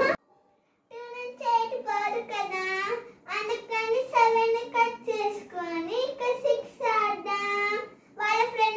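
A child singing a melody in long held notes, with no instrument. It starts about a second in, after a moment of dead silence.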